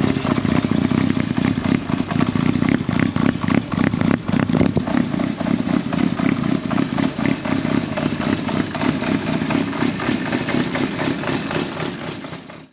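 Kawasaki GPZ400 four-cylinder engine running steadily through a new RPM Racing Project Murashima 4-2-1 exhaust system.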